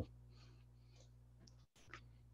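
Near silence: a steady low hum of line noise, with the sound cutting out briefly and one faint click near the end.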